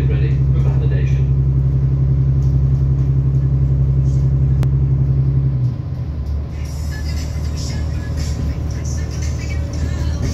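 Cabin sound of an Irish Rail 29000 class diesel multiple unit on the move. The underfloor diesel engine drones steadily, then its note drops away sharply a little past halfway as the engine throttles back. What is left is a rougher rumble of wheels on track, and a bright hiss comes in about a second later.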